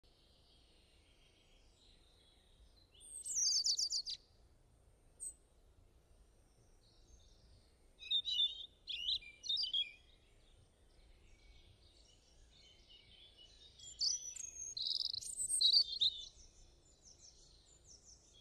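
Birds chirping: quick runs of high, sharp chirps in three spells, about three seconds in, around eight to ten seconds, and again around fourteen to sixteen seconds, with faint background hiss between them.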